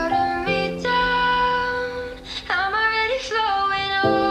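Slow pop song: a high singing voice holds long notes over sustained accompaniment, with a note sliding up about halfway through.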